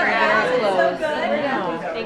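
Chatter of a group of people talking over one another in a room; several voices overlap, with no other sound standing out.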